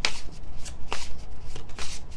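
A deck of tarot cards being shuffled by hand, with a string of sharp papery slaps as the cards strike each other, the loudest right at the start.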